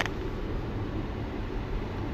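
Jeep's engine and road noise heard from inside the cabin while driving: a steady low rumble, with a short click at the start.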